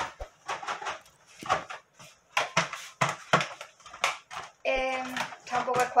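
Scattered short clicks and rustles of things being handled, with a brief held voice sound about five seconds in.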